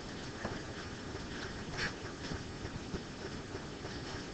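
Quiet classroom room tone: a steady low hiss with a few faint, brief knocks and rustles scattered through it.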